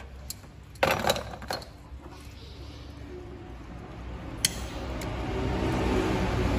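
Metal scissors clicking and snipping at a thin camera cable, with a quick run of sharp clicks about a second in and a single click later. Underneath, a steady background noise slowly grows louder.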